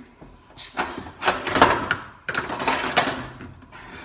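A kitchen drawer slid open and then slid shut: two noisy scraping strokes of about a second each, one straight after the other.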